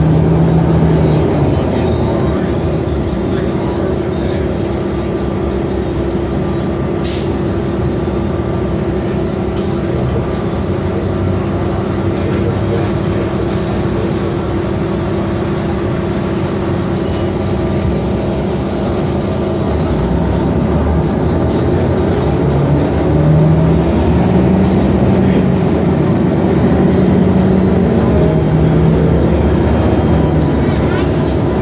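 Detroit Diesel Series 50 diesel engine and Allison automatic transmission of a 2002 New Flyer D40LF transit bus, heard from inside the passenger cabin while under way. The engine note holds steady for a long stretch, then rises and falls in steps near the end, with a thin high whine rising over it.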